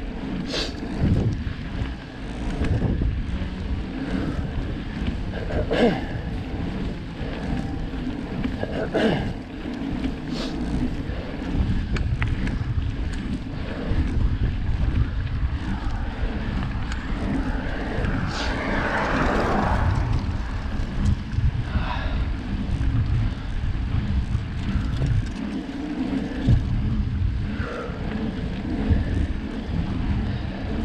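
Wind buffeting the camera microphone on a moving bicycle: a steady, uneven low rumble, with a few brief sharper sounds and a swell in the noise a little past the middle.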